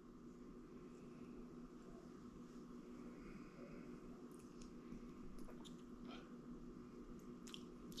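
Near silence: faint room tone with a steady low hum, and a few faint mouth clicks and lip smacks in the second half as whiskey is sipped and tasted.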